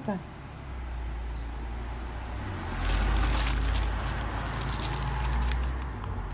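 Low engine rumble of a passing vehicle that builds over the first seconds and is loudest in the second half. From about halfway, a crinkling of a plastic packet and tissue paper being handled, with small clicks.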